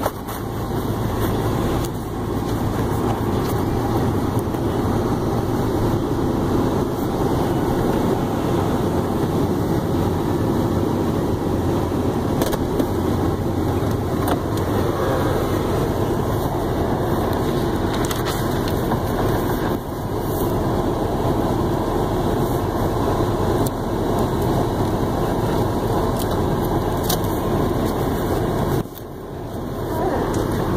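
A steady, muffled rumble and rustle of cloth rubbing over a phone microphone carried in a shirt pocket, with a few light knocks. It drops away briefly near the end.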